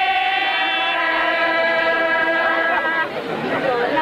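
A group of voices singing a long held note in unison, then breaking off about three seconds in into crowd chatter.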